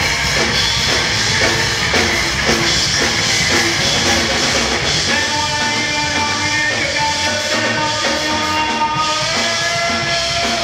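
Live punk rock band playing loud: distorted electric guitar, bass and drum kit pounding out a steady rhythm. About halfway through, the guitar moves to long held notes over the drums.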